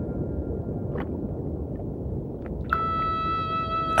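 Ambient documentary score: a low rumble with a faint tick about a second in. A held chord of several steady tones comes in near the end.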